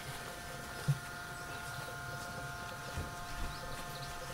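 Steady drone of insects, several even high tones held throughout, with faint rubbing as a towel wipes down pistol parts and a brief low knock about a second in.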